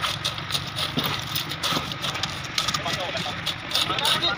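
An engine running steadily under wet concrete being tipped from a wheelbarrow and spread with a hoe, with short scraping sounds, and voices in the background.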